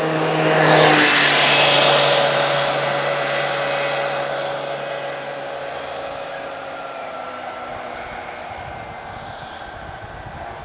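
A motor passing close by: its hum drops in pitch as it goes past, about a second in, is loudest just after, then fades slowly away.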